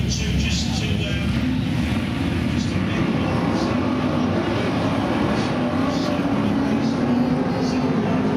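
BriSCA F1 stock cars' V8 engines running on track as a pack, a steady, loud engine drone whose pitch rises and falls as the cars lap.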